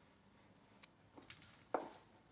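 Faint handling sounds of hands and a small plastic tub over a plastic bowl of clay as joker is tipped in and worked into it: a light click a little under a second in, a couple of soft knocks, and a slightly louder knock near the end.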